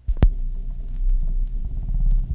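Stylus of a console stereo record changer dropping onto a 45 rpm single with a sharp thump, then a steady low rumble and hum through the speakers as it tracks the lead-in groove before the song starts.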